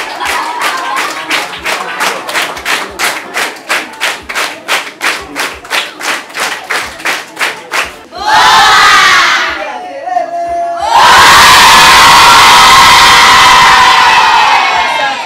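A group of girls clapping hands in a steady rhythm, about three claps a second. About eight seconds in they break into loud crowd cheering and shouting, which dips briefly and then comes back in a longer loud burst.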